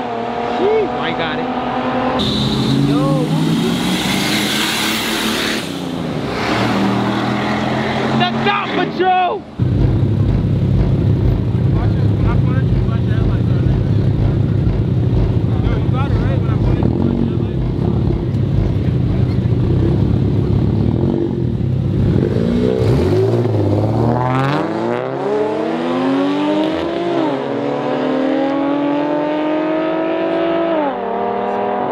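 Street-race cars at full throttle: in the first seconds engines accelerate away with their pitch climbing, mixed with a loud rushing noise. From about ten seconds in, a car idles close by with a lumpy, pulsing idle at the start line. From about twenty-three seconds engines rev up and launch hard, the pitch climbing, dropping once at a gear change, and climbing again.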